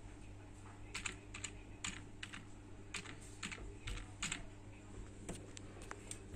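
Computer keyboard keys clicking as a short command is typed: about a dozen irregular keystrokes, bunched in the middle seconds, over a low steady hum.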